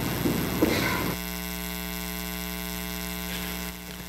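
Steady electrical mains hum from the sound system, a buzzing tone with many even overtones. It becomes the main sound when the rustling room noise cuts off about a second in.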